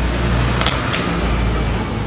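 Two light metallic clinks about a second in, with a short ring: the steel brake shoes and their return springs knocking against a motorcycle drum-brake backing plate as they are taken off by hand. A steady low hum runs underneath.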